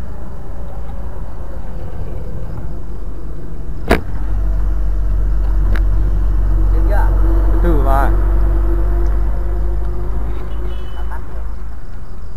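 Motorcycle ride with wind buffeting the camera microphone over engine sound, a loud steady low rumble. A sharp click about four seconds in, after which the rumble grows louder, and a falling engine tone around eight seconds as the bike slows.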